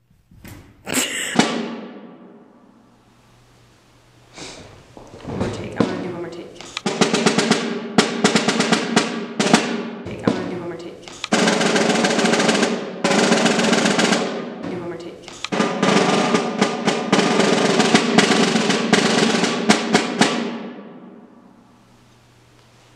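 Concert snare drum played with sticks: separate accented strokes and several long rolls that swell and die away, with a loud single stroke about a second in.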